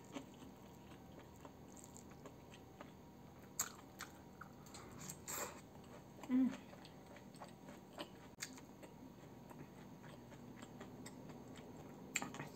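Faint, close-miked chewing of a mouthful of pecel, steamed vegetables in peanut sauce, with scattered small wet clicks of the mouth. A brief closed-mouth "mm" hum comes about six seconds in.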